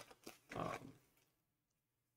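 A man's short hesitant "um" about half a second in, then near silence.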